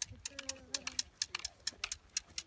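Irregular crisp clicks and crunches of several people's footsteps through dry grass, a few each second, with a faint held pitched sound, voice-like, early on for under a second.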